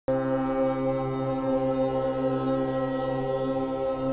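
Music of a chanted mantra drone, held steady on one low pitch without a break, starting abruptly.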